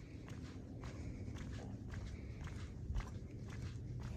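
Faint footsteps on a paved path at a steady walking pace, each step a soft tick, over a low rumble.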